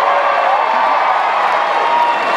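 Large audience cheering and shouting, many voices overlapping in a steady roar, in answer to a question put to the crowd.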